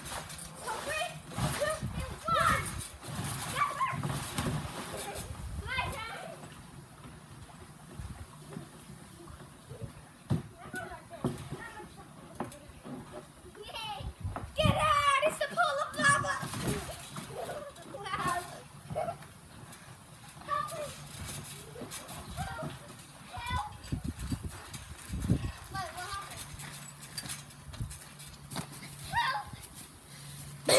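Children shouting and squealing while bouncing on a backyard trampoline, with scattered dull thuds from the jumps.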